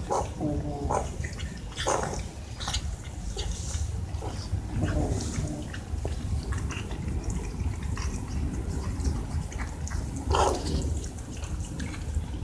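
Cats eating close together, chewing, with several short cat calls among them; the loudest call comes near the end.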